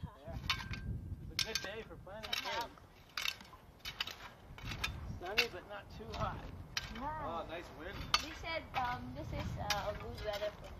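Metal shovel blades scraping and digging into loose soil, a string of sharp scrapes and knocks about one or two a second.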